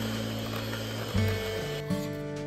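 Electric hand mixer running with its beaters in cake batter, a steady mechanical whir that dies away a little past halfway, over background music with sustained notes.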